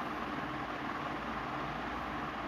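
Steady background hiss with a low hum underneath, even throughout, with no distinct events.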